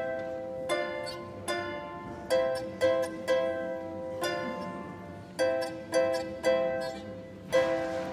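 Lyre harp played solo: an improvised melody of plucked notes and small chords, one or two a second, each ringing on and fading before the next.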